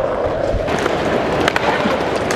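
Skateboard wheels rolling on pavement with a steady rumble, and a couple of sharp clacks about a second and a half in.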